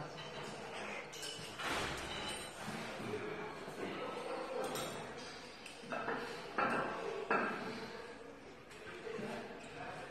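Gym room sound in a large echoing hall: indistinct voices in the background and scattered knocks. Three sharper knocks come about six to seven and a half seconds in.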